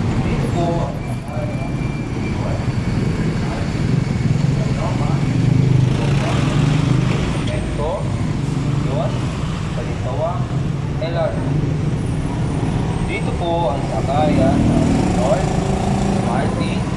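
Motorcycle riding slowly through congested city traffic: a steady low engine hum and surrounding traffic noise, with snatches of indistinct voices throughout.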